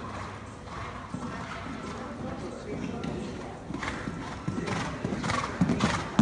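Horse's hooves cantering on an indoor arena's sand footing, the muffled beats growing louder near the end as the horse comes close.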